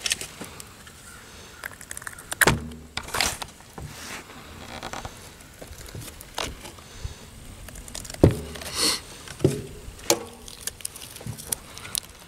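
A knife being worked down through a block of ballistics gel and the gel handled: irregular clicks and short scraping noises, with soft thumps about two and a half and eight seconds in.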